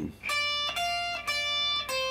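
Stratocaster-style electric guitar playing a short single-note phrase from the D blues scale: three notes of about half a second each on the first string at the 10th and 13th frets (D, F, D), then a lower C on the second string's 13th fret, held and ringing.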